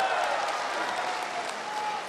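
A large indoor crowd applauding, with cheering voices mixed in.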